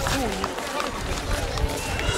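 A person speaking briefly over steady outdoor background noise, mostly in the first half-second.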